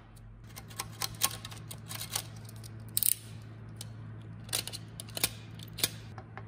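Hard black plastic body pieces of a toy Cybertruck being handled, giving irregular clicks and knocks, loudest about three seconds in, over a steady low hum.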